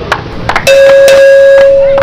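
Radio station promo jingle: a few sharp percussive hits over a music bed, then, under a second in, a loud steady electronic tone held for about a second and a half.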